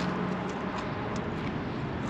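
Steady noise of road traffic, with a faint engine tone in the first half.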